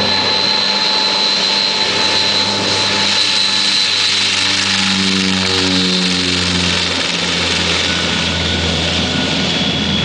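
Hawker Siddeley HS 748 turboprop at take-off power rolling along the runway: a loud, steady high whine from its Rolls-Royce Dart engines over the propeller roar. The pitch drops as the aircraft passes close by about six seconds in and heads away.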